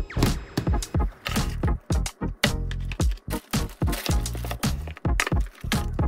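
Background music with a percussive beat.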